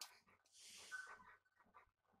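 Near silence, with faint muffled sounds and a brief breathy hiss about half a second in.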